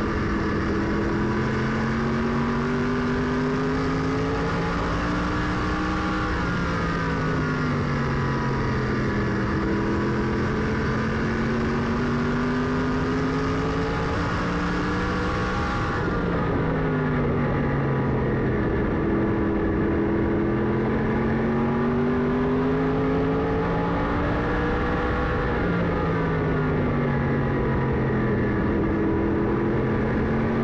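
Race car engine heard from inside the cockpit at racing speed, its pitch climbing along each straight and dropping off into each turn, peaking about every nine to ten seconds as it laps. The hiss above the engine thins out about halfway through.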